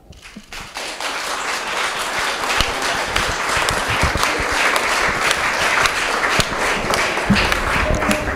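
Audience applauding: the clapping starts about half a second in, holds steady, and thins out near the end.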